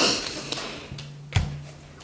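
Brief rustle of a stiff cut piece of cotton drill fabric being flipped over and slid on a tabletop, followed by a single light tap about a second and a half in.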